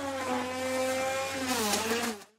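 Router motor running under cut, a high whine over hiss that slowly falls in pitch and dips again near the end.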